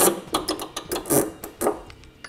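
Metal hardware clinking: a steel body-mount bolt and its washers handled and turned by hand, giving a quick string of sharp metallic ticks and clinks.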